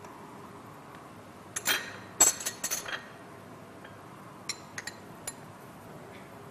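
Metal ladle clinking against a cooking pot while skimming the foam off simmering soup: one clink about two seconds in, a quick run of ringing clinks just after, and a few lighter taps near the end.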